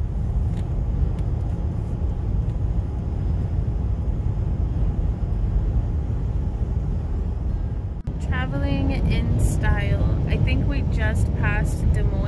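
Steady road and engine noise inside a car cabin moving at highway speed. About eight seconds in the sound cuts briefly, and a voice comes in over the same road noise.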